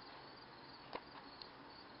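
Near silence: steady faint room hiss, with one small click about a second in.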